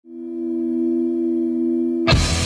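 A sustained electronic tone from the intro of the soundtrack music: two low pitches with fainter overtones, fading in over the first half second and then held steady.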